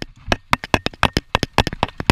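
A downhill mountain bike rattling over a rough dirt trail: a rapid, irregular clatter of sharp knocks and clicks as the bike and its mounted camera are jolted over the ground.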